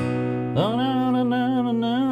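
Gibson acoustic guitar with a B chord strummed at the start and left ringing. From about half a second in, a man's voice holds one long sung note over it.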